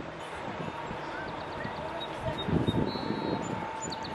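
Outdoor ambience: a steady background hiss with distant, indistinct voices about halfway through. Faint short high chirps come in quick series.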